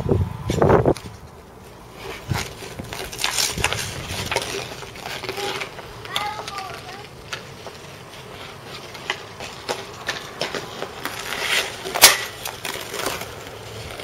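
Hockey skates scraping and gliding on outdoor rink ice, with light taps of sticks on the puck and ice. About twelve seconds in comes one sharp, loud crack of a stick striking.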